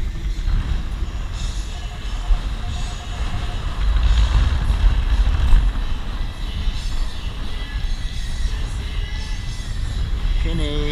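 Long-handled metal sand scoop digging into beach sand and the load being shaken and sifted, over a heavy steady low rumble. A row of short faint beeps from the metal detector comes near the start.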